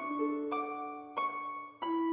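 Background music of plucked notes, each starting sharply and ringing away, with a new note about every two-thirds of a second.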